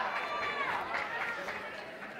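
Indistinct talking of several people in the background.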